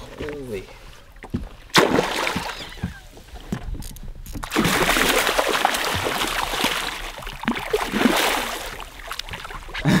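Hooked northern pike thrashing and splashing at the water's surface beside a boat, loudest for about four seconds from near the middle. A single sharp knock comes a couple of seconds in.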